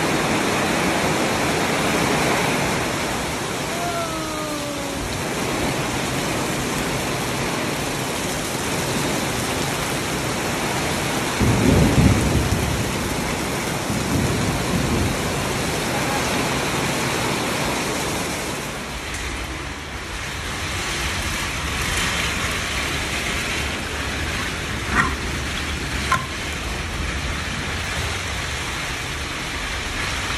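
Heavy tropical rain pouring down steadily, with water running off a roof edge. A short deep rumble about twelve seconds in is the loudest moment, and two sharp clicks come near the end.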